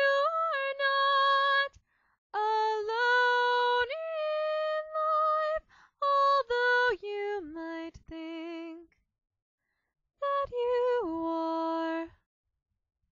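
A woman singing unaccompanied, holding long notes in four phrases separated by short silent pauses, with a wavering vibrato on a held note in the third phrase.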